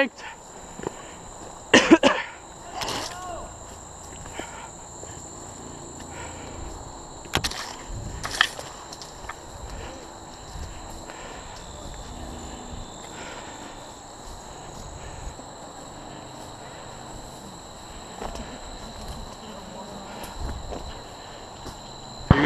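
Footsteps and brushing through grass and undergrowth on a narrow path, over a steady high-pitched whine. A brief voice sounds about two seconds in, and a couple of sharp snaps come about seven and eight seconds in.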